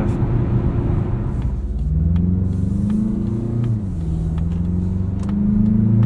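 Mazda CX-50's 2.5-litre turbocharged inline-four heard from inside the cabin under steady road rumble. About two seconds in, the engine note rises under acceleration, drops near the middle, then climbs again.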